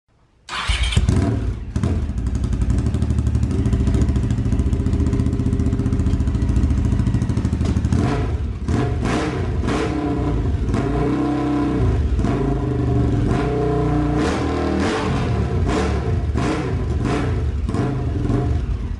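Honda CX650 V-twin engine of a cafe-racer build running through its peashooter-style exhaust on its first start after the rebuild. It catches suddenly and runs with a fast, even beat, then from about eight seconds the throttle is blipped repeatedly, the revs rising and falling.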